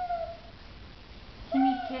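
A young child's short, high-pitched vocal sound, falling slightly in pitch, at the start; a woman's voice begins near the end.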